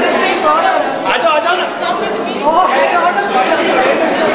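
Many people talking at once in a room, overlapping chatter of men's and women's voices as a group greets one another.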